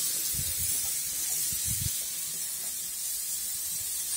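Raw hamburger patties sizzling on the hot grates of a preheated gas barbecue: a steady hiss, with a few soft low bumps.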